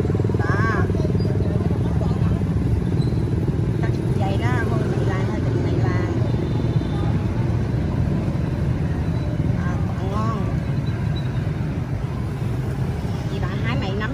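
Steady low rumble of motorbike street traffic, with faint voices over it now and then.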